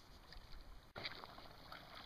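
Near silence: faint background hiss, with a brief dropout about a second in.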